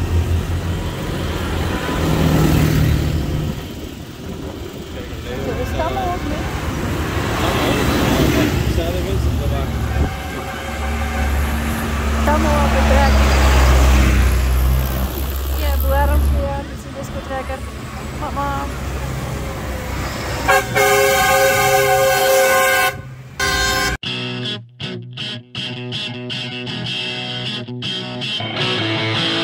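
Decorated tractors in a procession driving past close by, their diesel engines rumbling, loudest around the middle as one goes right by. A few seconds from the end a long multi-tone horn blast sounds, and then loud rock music starts abruptly.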